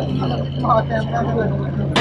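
A steady low hum runs under faint crowd voices in the speaker's pause, with a sharp click at about two seconds.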